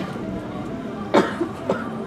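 A person coughing twice, about a second in and again half a second later, over a low murmur of crowd voices.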